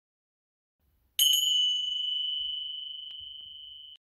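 Silence, then a single high bell-like ding about a second in, its brighter overtones dying quickly while one clear tone rings on and slowly fades.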